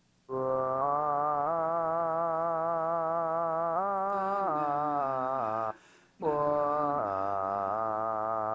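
Playback of a sung vocal melody with vibrato, layered with its bounced-to-MIDI copy in Reason 9, which roughly follows the melody with imperfect timing. One long phrase stepping up and down in pitch breaks off briefly about six seconds in, then a second phrase follows.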